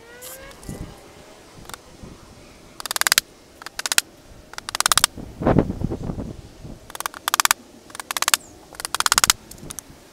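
A run of about six short, rattling bursts of tool noise, each under half a second and a second or so apart, from a batten being fastened onto a wooden box.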